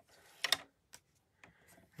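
A few light clicks and taps from handling cardstock on a paper trimmer while the sheet is lined up for a cut. The sharpest click comes about half a second in, after a faint rustle of paper, and a few fainter ticks follow.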